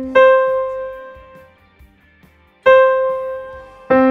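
Single piano notes an octave apart, played to demonstrate the octave. The higher note is struck about a quarter second in and again about two and a half seconds in, and the lower note an octave down near the end. Each note rings and fades.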